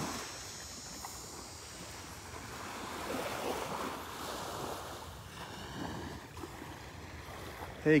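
Small waves from a calm sea lapping and washing up on a sandy beach, with light wind on the microphone. The wash swells a little about three to four seconds in.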